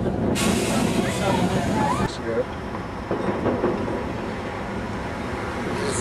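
Steady rumbling background noise with some voices. For the first couple of seconds there is a harsh hiss that stops abruptly about two seconds in, at an edit, leaving a steadier lower rumble like city street traffic.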